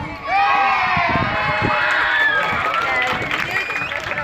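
A group of high voices cry out together in many overlapping rising-and-falling calls as the music drops away, with short sharp ticks of clapping or stamping near the end.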